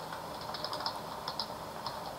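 Typing on a computer keyboard: a quick, irregular run of soft keystrokes.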